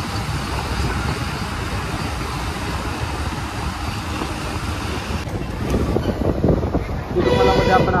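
Steady road and wind noise from a moving bus, then a vehicle horn sounds one steady toot for about a second near the end.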